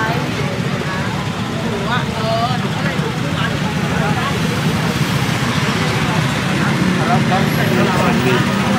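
Busy street ambience: several people talking at once over vehicle engines running steadily, with motorbikes close by.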